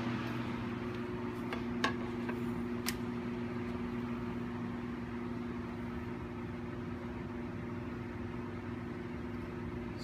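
Steady hum of laboratory equipment, a low drone with a few fixed pitches that never changes, with a couple of light clicks about two and three seconds in.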